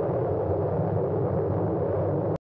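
Steady low rumbling roar of a tornado's wind on an old film soundtrack, unbroken throughout.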